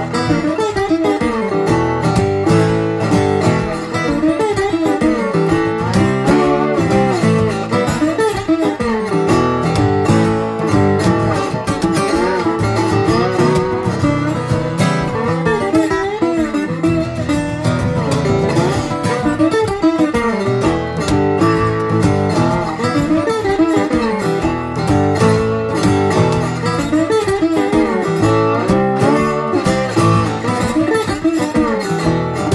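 An Amistar Tricone resonator guitar and an acoustic guitar playing a blues together, with busy fingerpicked lines that run without a break.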